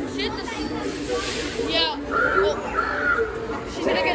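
Talking Halloween witch animatronic cackling twice in a warbling voice, over the chatter of a crowd of shoppers.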